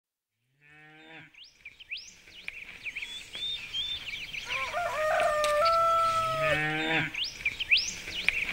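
Farmyard sounds: a cow moos about a second in and again near the end, small birds chirp throughout, and a longer, stepped, pitched call in the middle is the loudest sound.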